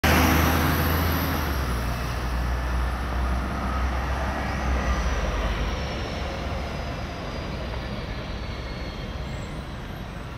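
City road traffic: a heavy vehicle's low rumble, loudest at the start and fading over the first six seconds as it moves away, with faint whines falling slowly in pitch, over a steady hum of traffic.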